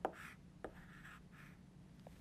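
Chalk on a blackboard: a sharp tap as the chalk meets the board, then a few short, faint scratching strokes as a letter is written, with a second small tap partway through.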